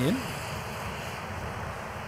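Steady rushing noise of riding a bicycle: wind on the microphone and road noise, with no distinct events.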